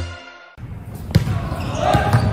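The end of a news intro jingle fades out, then the sound of an indoor basketball game in a gym: background crowd noise with two sharp knocks of a basketball bouncing, about a second in and near the end.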